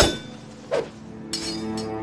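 A sharp metallic clink rings out at the start. A softer swish comes just under a second in, then two brief high clinks, as low sustained string music comes in.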